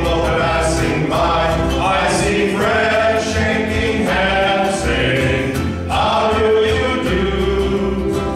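Men's choir singing a song in several-part harmony.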